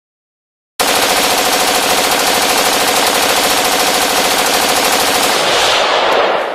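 A loud, rapid rattling sound effect that starts suddenly about a second in, holds steady, then fades away near the end.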